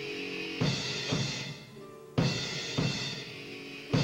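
Background music with a drum kit: strong kick and snare hits about every half second to second over sustained instrumental notes.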